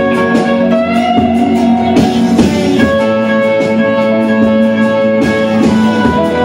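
Electric guitar lead on an orange hollow-body guitar with a Bigsby vibrato, played over a full-band rock backing recording: held notes, with a couple of notes bent upward about a second in.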